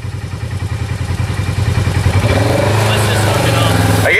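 ATV engine idling steadily, growing louder with a slight rise and fall in pitch in the second half.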